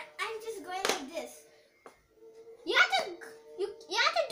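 Children talking in short bursts, over background music that holds a steady tone throughout.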